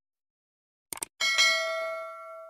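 Sound effects of an animated subscribe button: a quick double click about a second in, then a notification bell ding that rings on and fades.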